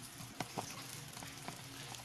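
Melted butter sizzling faintly in a saucepan, with a few small pops.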